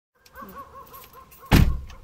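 A warbling whine that rises and falls about four times a second, cut off by a loud thump about one and a half seconds in.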